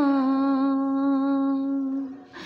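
A woman singing a naat without accompaniment, holding one long note that dips slightly in pitch at the start and fades a little near the end.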